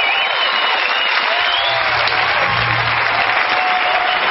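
Concert audience applauding, a steady wash of clapping with some cheering voices gliding over it.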